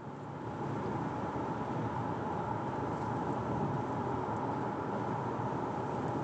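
Steady road and engine noise heard inside a car cruising on a highway, with a faint steady hum above it.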